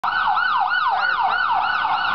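Electronic emergency-vehicle siren in a fast yelp, its pitch rising and falling about three times a second.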